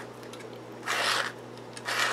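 A stainless steel spiral developing reel is turned by hand as 120 roll film winds into its grooves, giving one short soft scraping rasp about a second in over a steady low hum. The film is centred and feeding in without binding.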